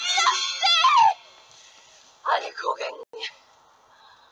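A young woman shouting urgently in a high, strained voice, breaking off about a second in; a few shorter, quieter vocal sounds follow in the middle.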